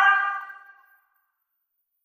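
A woman's voice ending the word 'sold' (成交) rings on as a steady tone with an added echo, fading away within about a second; then silence.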